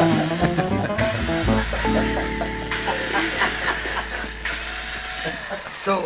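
Cordless drill running in two short spells on a wooden box, its motor whine winding down near the end.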